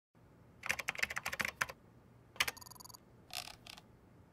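Computer keyboard typing: a quick run of keystrokes lasting about a second, then a single click and a short electronic beep, with a few softer keystrokes near the end.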